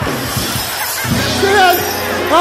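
A sudden crash like breaking glass at the start, then a short burst of music with a held low note, over a laughing audience.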